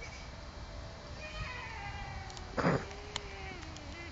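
A small child's high, drawn-out wordless cries, sliding down in pitch and then held, with a short thump about two and a half seconds in.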